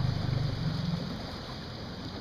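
A boat motor running with a low steady hum over water noise, fading in the second half.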